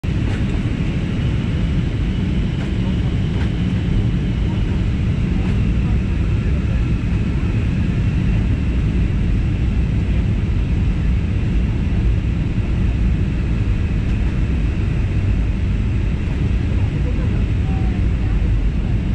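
Steady cabin noise inside an Airbus A320-family jet airliner on descent: a deep, even rush of engines and airflow with a faint high whine riding on top.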